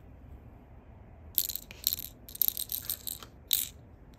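Small LEGO plastic pieces clicking and rattling as a cola-can piece is handled and set into a small blue LEGO box with a hinged door. A quick cluster of light clicks starts about a second and a half in and lasts about two seconds.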